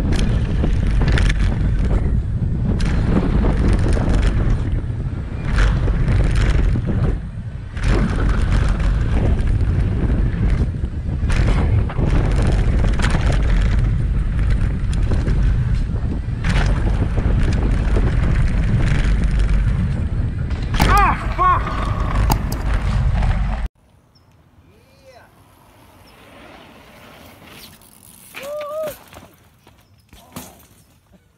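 Wind rushing over the microphone of a camera riding on a mountain bike going down a dirt trail, with knocks and rattles as the bike goes over bumps. A voice calls out about 21 seconds in. The rush cuts off suddenly a few seconds later, leaving a quiet stretch with a short voice near the end.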